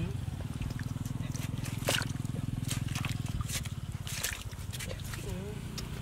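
A small engine running steadily with a fast, even pulse, under scattered clicks and splashes of hands working in wet mud and water.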